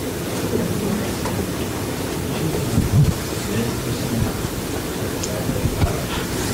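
Steady hiss of lecture-hall room noise with a faint, indistinct voice, and a brief louder bump about three seconds in.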